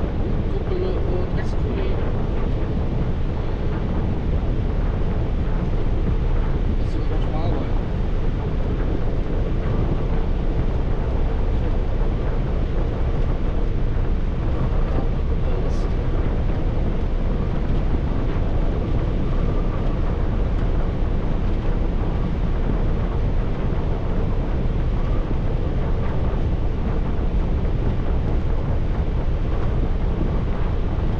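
Steady road and wind noise inside a vehicle cabin at motorway speed: an even, unbroken low rumble with a hiss on top. There are a few faint, brief high ticks.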